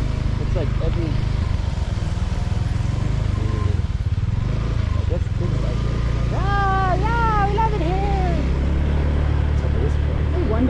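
Steady low rumble of a moving road vehicle. About two-thirds of the way through, a person's voice makes drawn-out sounds that rise and fall in pitch.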